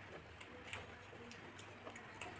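Quiet eating sounds: a few faint scattered clicks and ticks as two people mix and eat biryani by hand from their plates, over a faint steady high-pitched whine.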